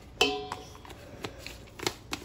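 A stainless steel mixing bowl is tapped once and rings with a short, fading tone. Then come a few light clicks and taps as a plastic spice bottle is shaken over it.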